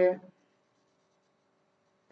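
A man's voice trails off at the very start, then near silence with only a faint steady hum.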